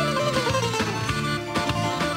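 Greek laïko band playing an instrumental passage: a bouzouki lead over electric guitar and drums keeping a steady beat, with a short falling melodic run in the first second.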